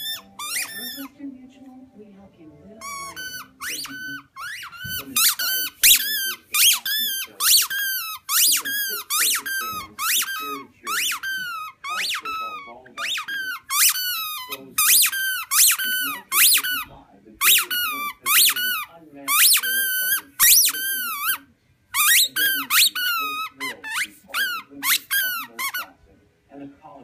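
A dog chewing a squeaky tennis ball, making it squeak over and over, about one to two squeaks a second. Each squeak arches up and down in pitch, and they often come in quick pairs.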